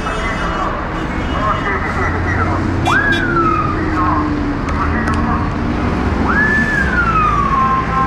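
Street traffic with a siren giving two wails, each sweeping quickly up and then sliding slowly down, the second longer than the first, over the low rumble of engines.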